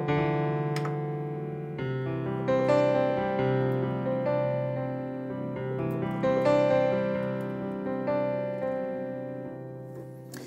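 Mini Grand virtual piano in Pro Tools, played live from an M-Audio Oxygen Pro 25 MIDI keyboard: sustained chords, a new one struck every second or so, fading toward the end. The piano sounding is the sign that Pro Tools is receiving the keyboard's MIDI notes.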